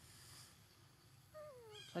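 Mostly near silence, then about one and a half seconds in a faint, thin call that falls in pitch, like a baby macaque's whimpering coo.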